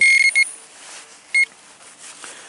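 Handheld Gold Hunter pinpointer beeping at one high pitch as it is swept over sand: a long beep with a quick second one, then one short beep about a second and a half in. The beeps signal a buried metal target, here a coin.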